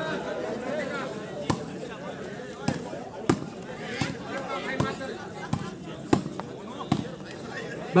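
A volleyball being struck by players' hands during a shooting volleyball rally: a string of about eight sharp slaps, irregularly spaced, over a background of spectators' chatter.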